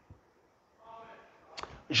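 A pause in a man's speech: mostly quiet, with a faint brief voiced sound about a second in and a couple of short sharp clicks just before he starts speaking again near the end.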